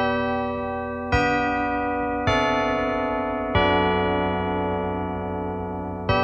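Keyboard music: sustained, electric-piano-like chords, each struck and left to ring slowly down, with new chords about one, two and three and a half seconds in.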